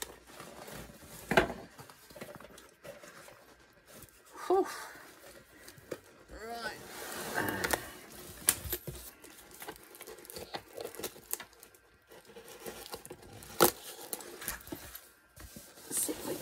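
Packaging being unwrapped by hand: tape and paper wrapping tearing and crinkling, with a few sharp knocks, the loudest about two-thirds of the way through.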